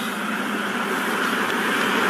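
A Chevrolet pickup truck driving past close by: a steady rush of engine and tyre noise that grows louder as it nears.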